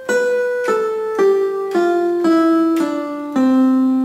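Electronic keyboard in a piano voice playing a descending C major scale, one note about every half second from B down to middle C, the last C held.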